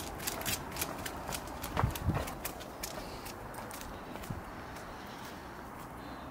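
A husky's paws and claws clicking on concrete steps and paving as it goes down, the clicks thick for the first three seconds or so and then thinning out, with a couple of heavier thumps about two seconds in.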